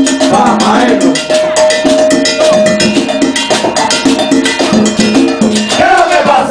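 A live plena band playing a fast Puerto Rican rhythm: congas and a cowbell under a pitched melodic line, with one long held note in the middle.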